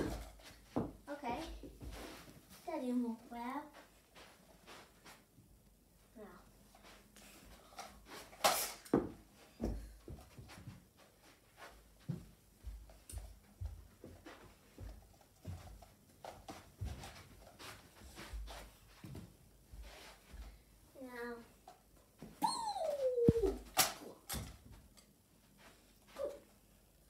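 Tennis balls being thrown and landing around a room: scattered knocks and thuds, the loudest about eight seconds in and near the end, with a few short vocal sounds from a child in between.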